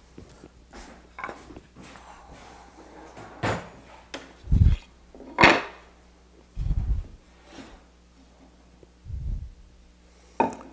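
Wooden workpieces being handled and set on a wooden workbench: a few scattered sharp wooden knocks and several dull thumps.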